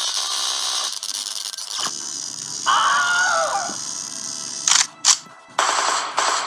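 Edited soundtrack of added sound effects and music: a long burst of hissing noise, then a brief tone that rises and falls, then two short noisy bursts and another stretch of hiss near the end.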